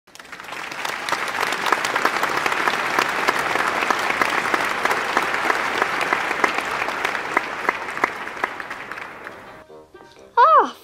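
Crowd applause: dense clapping that fades in over the first second, holds steady, and fades out near the end.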